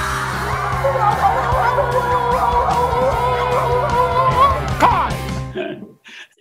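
A children's song backing track under long, wavering wolf-style howls that glide up at the start and again near the end. The playback cuts off suddenly near the end.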